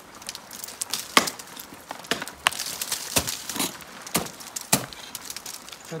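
Ice axe picks and crampon points striking waterfall ice in a series of sharp strikes, roughly two a second. The ice is slightly melted and soft, like sherbet, so the tools bite in easily.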